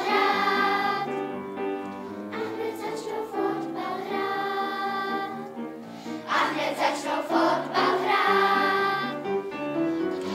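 Children's choir singing, in long held notes that change pitch every second or so.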